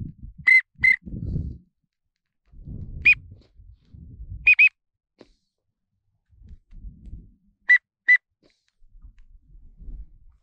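A duck whistle call blown in short, high whistled notes, mostly in quick pairs, about every three seconds, with low rustling and handling noise between the notes.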